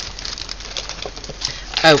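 Light rustling and small clicks of craft items being handled on a tabletop, followed near the end by a woman's short "Oh."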